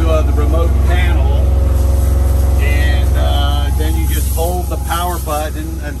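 Men talking over a loud, steady low engine hum that runs unchanged throughout.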